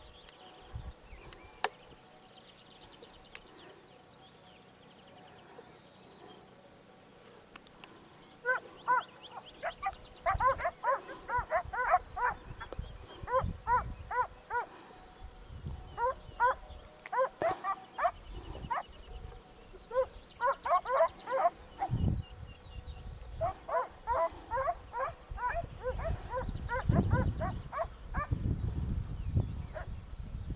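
Metal bells on grazing livestock clanking in irregular clusters of quick strokes, starting about a quarter of the way in, over a steady high insect chirring. Low rumbles on the microphone near the end.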